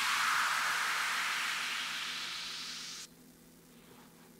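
White-noise sweep effect closing an electronic dance mix: a hiss that fades steadily, then cuts off suddenly about three seconds in.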